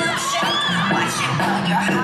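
Audience cheering and shouting over the dance's backing music, with many high calls overlapping and rising and falling in pitch.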